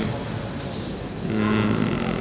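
A woman's held hesitation hum, one steady low 'mmm' starting about two-thirds of the way in, over steady background noise.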